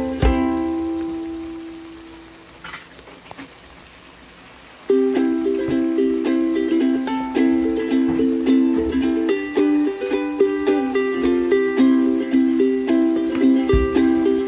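Background music of plucked strings: one track fades away over the first few seconds, and a new bouncy track of plucked notes starts suddenly about five seconds in.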